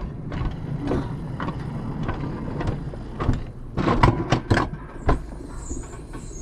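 Alpine coaster sled running on tubular steel rails: a steady low rumble from the wheels, with irregular knocks and rattles, several close together about four seconds in.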